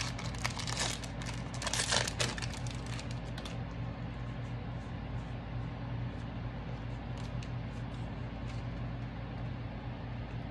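Foil wrapper of a Pokémon Vivid Voltage booster pack being torn open and crinkled: a dense run of crackles over the first three and a half seconds, loudest about two seconds in. After that only a steady low hum remains, with a few faint ticks as the cards are handled.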